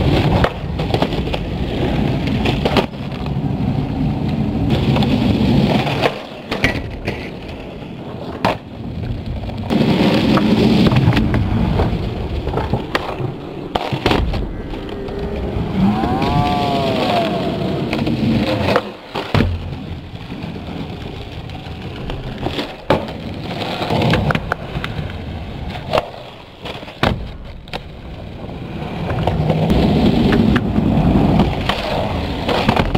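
Skateboard wheels rolling over a concrete skatepark with a steady rumble, broken by many sharp clacks of the board popping and landing tricks.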